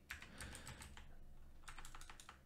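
Faint computer keyboard typing: a few keystrokes just after the start, then a short run of them near the end.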